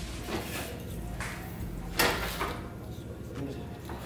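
Clunks and knocks of an aluminium heat exchanger being handled and positioned against its mounting bracket behind the front bumper, with one sharper knock about two seconds in.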